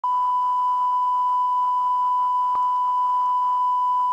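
A steady, unwavering test tone at a single high pitch, the line-up tone at the head of a recorded tape. A single faint click comes about halfway through.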